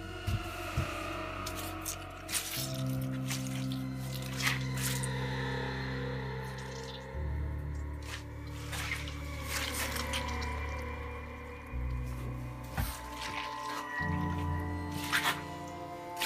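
Background music with sustained low notes that change every few seconds, with scattered faint clicks and knocks.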